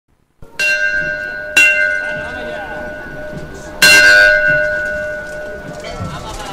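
A bell struck three times, each stroke ringing on and slowly fading, the third stroke the loudest.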